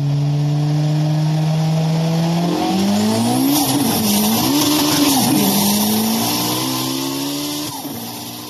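Race-car sound effect: an engine note held steady, then revving up and down in pitch in the middle, settling again and starting to fade near the end.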